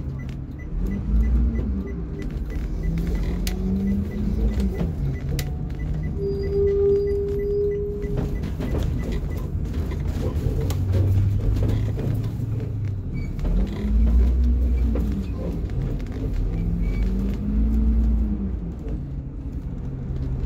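A 2008 Blue Bird school bus engine at low speed, its pitch rising and falling four times as the bus speeds up and slows, over a steady low rumble. A short steady whine sounds for about two seconds near the middle.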